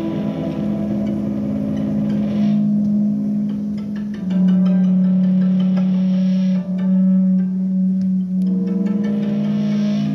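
Live instrumental music from a small ensemble with violin, built on long held low notes with sustained tones above; the main low note steps slightly lower about four seconds in.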